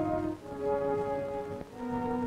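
Orchestral background music: brass holding sustained chords that change about half a second in and again near the end.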